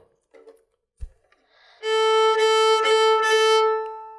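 A violin playing one long bowed note near the frog of the bow, steady in pitch, starting about two seconds in and dying away at the end. A soft knock comes just before it, about a second in.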